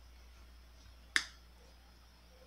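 A single sharp crack about a second in, as a hard amor-agarradinho (coral vine) seed is split open between the fingers; otherwise faint room tone.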